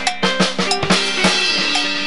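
Live band playing a Latin-style groove: drum kit and hand percussion on a quick, steady beat, with electric guitar.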